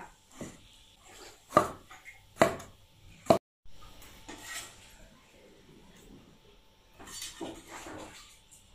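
A cleaver chopping eggplant into strips on a wooden chopping board: four sharp knocks of the blade on the board, about a second apart, in the first few seconds.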